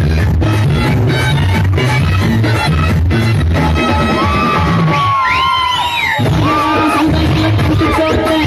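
Loud Tamil duet song with a steady heavy beat and singing. About five seconds in, the beat drops out for a moment under a held sung line that slides in pitch, then comes back.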